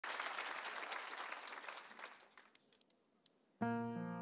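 Audience applause dying away to a few scattered claps and a short hush. Then a held keyboard chord comes in suddenly near the end, opening the ballad's introduction.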